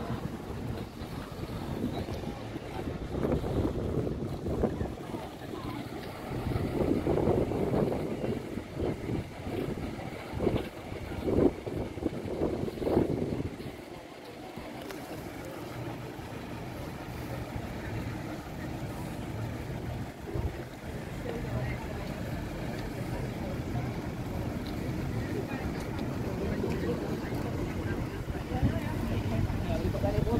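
Engine of a 2007 Nissan Navara pickup running as the vehicle pulls slowly out close by, settling into a steady low hum from about halfway through. Irregular knocks and wind on the microphone sit over it in the first half.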